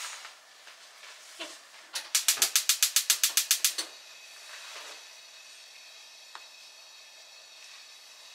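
Gas hob burner being lit: the igniter clicks rapidly, about nine clicks a second for just under two seconds, starting about two seconds in, then stops.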